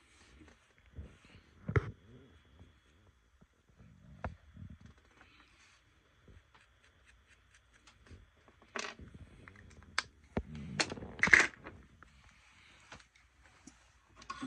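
Scattered small clicks and rustles of hands handling a flux syringe and a small plastic rocker switch on a desk, with a louder rustling scrape a little past the middle.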